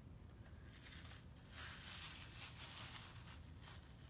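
Faint peeling and crinkling of a sticky silk-screen transfer being pulled off an inked cloth towel.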